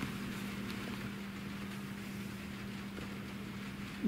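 A steady low hum with a hiss over it, holding one level and pitch without a break.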